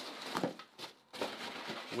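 Hands rummaging in a cardboard box, with irregular rustles and light knocks of packaging and small tins being moved.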